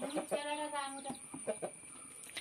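Rooster clucking: a run of quick short clucks with a longer held call about half a second in.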